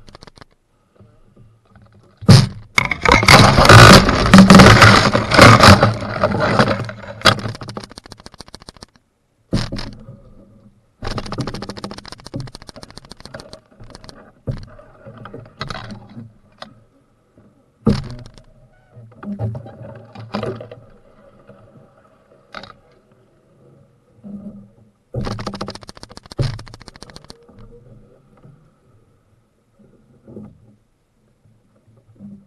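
Scraping and knocking against a canoe hull: a long, loud, rough scrape starting about two seconds in and lasting some five seconds, then shorter scrapes and sharp knocks scattered through the rest.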